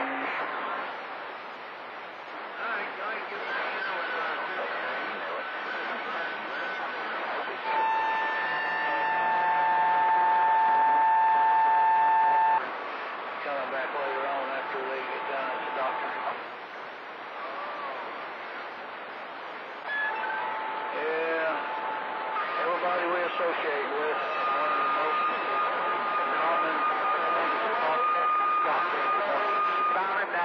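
CB radio on channel 28 receiving distant skip: a steady static hiss with garbled, unintelligible voices of far-off stations, crossed by steady whistle tones from other carriers. The loudest whistle holds for about four seconds starting about eight seconds in, and another sets in in the last third.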